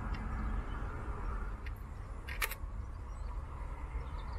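A single sharp click about two and a half seconds in: the Hasselblad 500C/M firing its shutter with the mirror already locked up, over a steady low background rumble.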